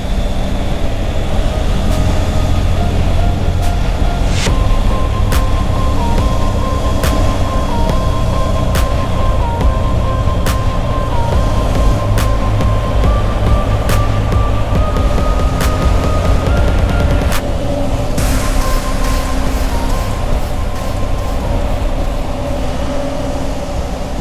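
Triumph Tiger 850 Sport's three-cylinder engine cruising steadily with wind and road noise in a road tunnel, under background music. The music has a simple stepped melody and a tick a little under a second apart, from about four seconds in to about seventeen seconds in.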